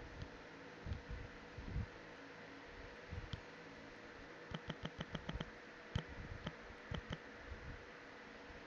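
Faint taps of fingers typing on a phone's touchscreen keyboard: a quick run of about seven clicks a little past the middle, then a few scattered taps, over a steady low hiss.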